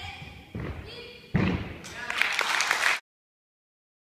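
Voices echoing in a large gym hall, then a heavy thud about a second and a half in as a tumbling gymnast lands on the sprung floor, followed by a burst of noise and sharp knocks; the sound cuts off abruptly about three seconds in.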